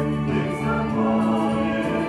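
Church choir singing in long held notes, with a change of chord about half a second in.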